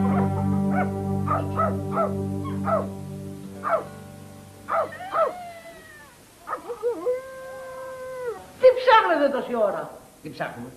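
Background music fading out while a dog gives several short yelps, then one long howl of about two seconds, and a quick flurry of yelps near the end.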